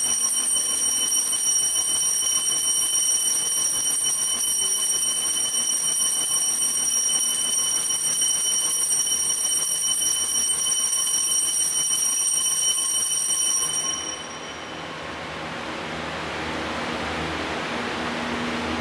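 Altar bell ringing with a steady, high, sustained tone, marking the elevation at the consecration of the Mass; it stops abruptly about fourteen seconds in.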